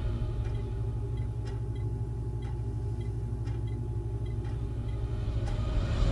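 Low, steady rumbling drone from the track's outro sound design, with faint ticks about once a second like a clock.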